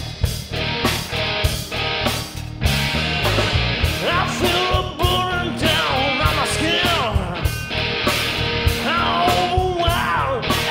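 Live rock band playing: drum kit, bass and electric guitar through Marshall amplifiers. From about four seconds in, a lead melody with pitch bends rises over the band.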